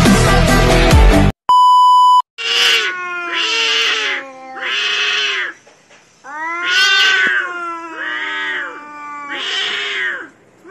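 Loud music cuts off about a second in, followed by a short steady electronic beep. Then cats yowl in a standoff, about six long wavering howls one after another, the threat calls of tomcats squaring up to fight.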